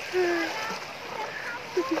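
Shallow sea water splashing and lapping around a person wading in small waves at the water's edge.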